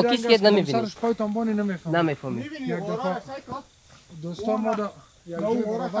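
A man speaking Dari in short phrases, with two brief pauses, and some breathy hiss mixed in.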